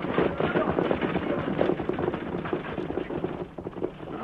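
Radio sound effect of horses' hoofbeats and a stagecoach pulling away: a dense, rapid clatter that fades out near the end.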